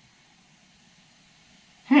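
Near silence: faint room tone, then a man's thoughtful "hmm" just before the end.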